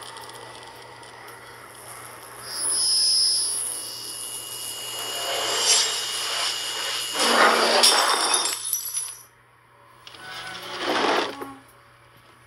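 Film sound design of a hand burning on a red-hot electric stove coil: a swelling sizzling hiss with high ringing tones, cutting off suddenly about nine seconds in, then a second shorter burst near the end.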